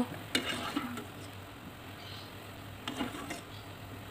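A wire skimmer stirring and lifting beef meatballs out of a pot of simmering water, heard faintly, with a few light clicks and rustles about a third of a second in and again around three seconds in.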